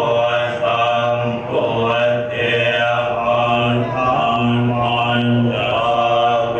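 Buddhist monks chanting in unison: a steady, low monotone with long held syllables.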